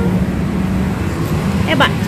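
Steady low background rumble and hum, with a man's voice breaking in briefly near the end.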